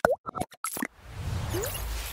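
Animated subscribe-graphic sound effects: a quick run of short pops and blips in the first second, then a swelling whoosh with a low rumble.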